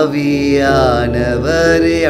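A man singing a slow worship phrase in long, held notes that glide between pitches, over a steady sustained music backing.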